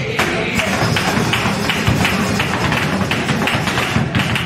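Flamenco dancer's footwork (zapateado): a rapid run of heel and toe strikes on the floor, over flamenco guitar playing alegrías and hand-clapping palmas.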